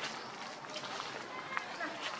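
A macaque running through undergrowth: leaf rustling and a few light, sharp knocks, the loudest about one and a half seconds in, over a steady outdoor background with faint indistinct voices.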